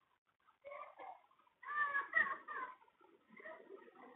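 Felt-tip marker writing on a whiteboard: faint squeaks and scratches in three short spells of strokes, the middle one with squeaks that glide up and down in pitch.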